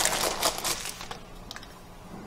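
Thin clear plastic bag crinkling as a plastic case is pulled out of it. The crinkling dies away after about a second, leaving a couple of light clicks.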